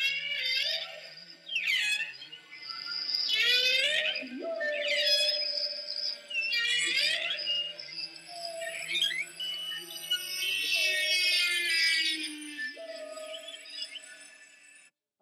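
Recorded whale song played from a phone held up to a microphone: a series of long calls that glide up and down in pitch, with short gaps between them.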